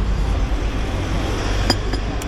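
Steady low rumble of street traffic, with a bus passing. Near the end comes a single clink, a ceramic coffee mug set down on its saucer.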